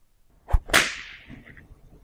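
Comedy drum sting marking the punchline: a low drum thump about half a second in, then straight after it a cymbal crash that rings out and fades over about a second.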